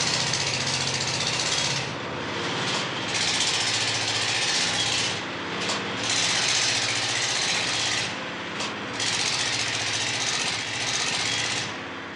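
Diesel generator engine running steadily, with a loud hiss that comes and goes in stretches of two or three seconds.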